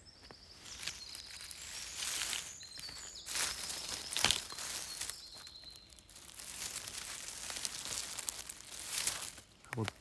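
Rustling and crackling of dry forest-floor litter, twigs and grass as someone moves through the undergrowth, in irregular surges. A few short, thin high tones sound in the first half.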